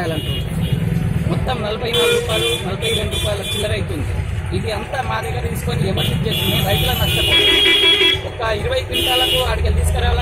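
Vehicle horns honking in street traffic, in three bouts: about two seconds in, around seven seconds, and again near the end.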